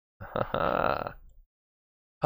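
A man burping once, a single voiced belch lasting about a second.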